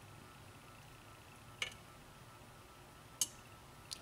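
Quiet room tone with three brief faint clicks: about a second and a half in, about three seconds in, and just before the end. These are small handling noises from fingers working a crimped metal pin on a freshly sleeved cable.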